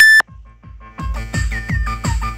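Techno played live on hardware drum machine and synths (Roland TR-8, Roland TB-3, Korg Kaoss Pad). It opens with a very loud, short high-pitched tone that cuts off suddenly, then a few sparse notes, and about a second in the kick drum comes back at about two and a half beats a second under a pattern of short, falling synth blips.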